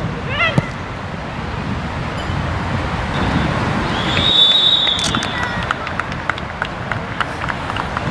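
Open-air football-match sound with wind noise on the microphone and a brief shout from a player early on, then a referee's whistle blown once, a single high note held for about a second, near the middle.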